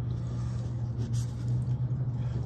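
A steady low hum, with a few faint clicks and scrapes about a second in, as pliers handle and lift a part out of a plastic tub of liquid.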